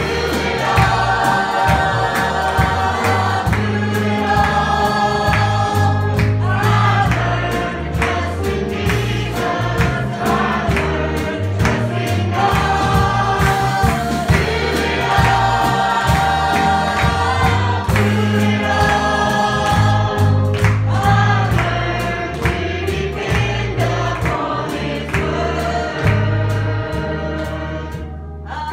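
Live gospel song: singing accompanied by drum kit, electric bass and piano.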